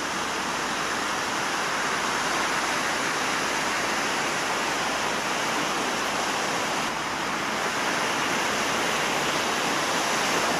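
Ocean surf breaking and washing ashore: a steady rushing wash of waves, swelling slightly a couple of seconds in and again near the end.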